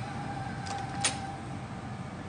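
Makeup brush and eyeshadow palette being handled, with a faint click and then a sharper click about a second in, over a low steady hum.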